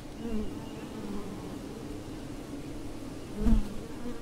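A wild honey bee colony buzzing at its nest entrance in a tree hollow: a steady hum of many wings, with single bees' pitches wavering as they fly close past. A brief low thump about three and a half seconds in.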